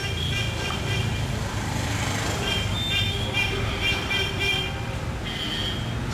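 Street traffic ambience: a steady low engine hum, with vehicle horns tooting on and off and voices in the background.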